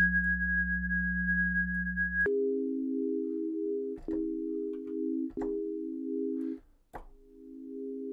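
Synthesizer output from Reaktor's Kodiak Morph Filter in eight-pole mode, with its resonant peaks ringing almost like a self-oscillating filter. First there is one high steady tone over a low hum. About two seconds in it switches to a steady low chord of several close tones with faint clicks, which cuts out briefly about seven seconds in and comes back.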